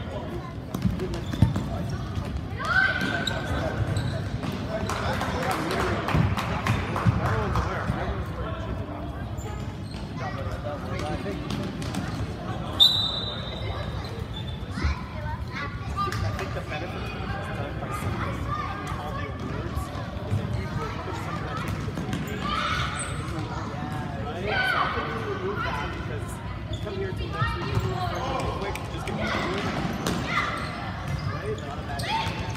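A soccer ball being kicked and bouncing on a gym floor in a youth indoor game, the sharp knocks echoing in a large hall, with players and spectators shouting.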